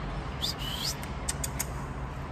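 A man whistling to call a dog: two short rising whistles, followed by a few faint high ticks.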